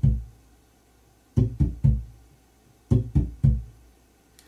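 Electric bass played with a raking technique: the right-hand middle finger rakes across strings that the left hand lightly mutes, giving percussive clicks, and a fretted C on the A string's third fret is added. It comes in short bursts of three quick strokes, the last one ringing a little longer, about every second and a half.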